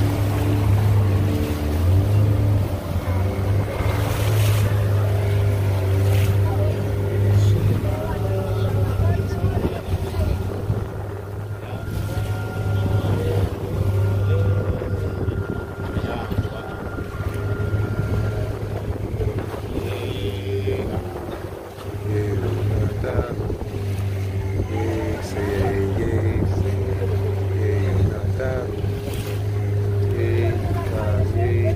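Outboard motor of a wooden canoe running steadily with a low drone. It eases off in the middle and grows stronger again about two-thirds of the way through, over the rush of water along the hull.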